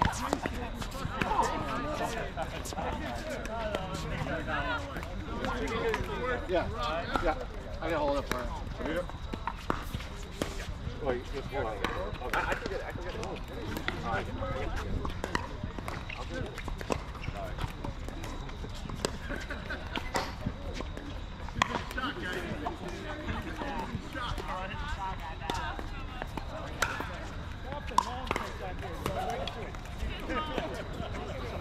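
Sharp pops of pickleball paddles striking a hollow plastic ball, scattered irregularly from several courts, with people's voices talking and calling throughout.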